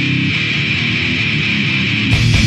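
Distorted electric guitar playing a heavy riff on its own, with no drums.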